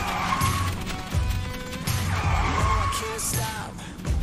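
Car tyre-squeal sound effect, heard twice (at the start and again about two seconds in), laid over background music.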